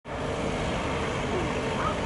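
Steady city street noise, mostly road traffic running.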